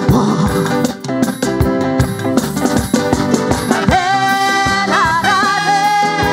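Live calypso band music with drums, bass and guitar keeping a steady beat. About four seconds in, a long high held note enters and wavers near the end.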